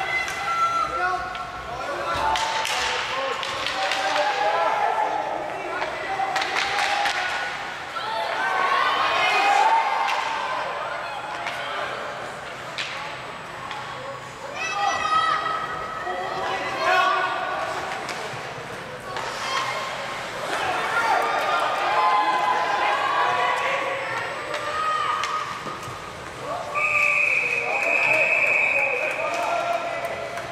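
Ice hockey play echoing in a large, mostly empty rink: players' and onlookers' voices calling out, with scattered knocks of sticks and puck against the boards. Near the end a single steady whistle blast of about two seconds, a referee stopping play.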